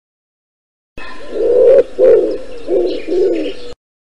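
Pigeon cooing: about four low coos that start abruptly about a second in and cut off sharply near the end.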